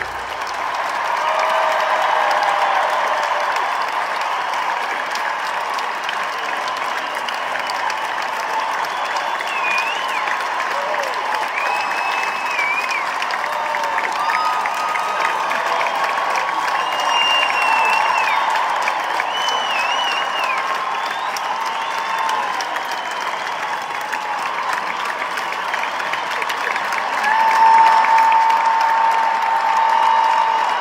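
Large arena crowd applauding and cheering as a song ends, with scattered whistles and shouts rising above steady clapping.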